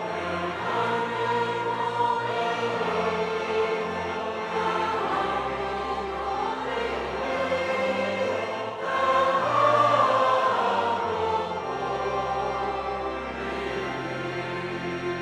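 Choir and congregation singing a hymn, accompanied by a pipe organ holding steady bass notes that change every second or two beneath the voices.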